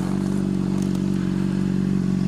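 2008 Honda CBR600RR's inline-four engine idling steadily, its pitch holding level.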